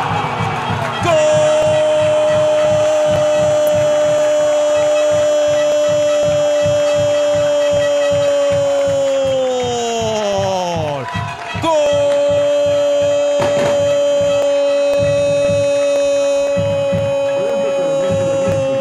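A football commentator's long, held goal cry ('Goooool'), calling a goal. He holds one high note for about ten seconds, lets it slide down as his breath runs out, then takes up a second long held note. A steady low beat runs beneath.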